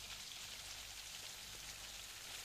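Faint, steady rain, a radio-play sound effect heard as an even hiss.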